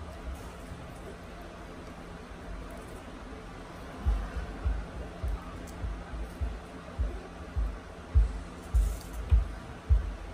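A regular series of low, dull thumps, about one and a half a second, starting about four seconds in over faint room noise with a low steady hum.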